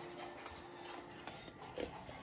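Quiet kitchen room tone with a faint steady hum that fades about halfway through, and a soft brief handling sound near the end as a chocolate cocoa bomb is set into a plastic cup.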